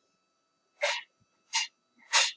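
A person's two short, sharp breathy bursts, like stifled sneezes, about a second in and again near the end.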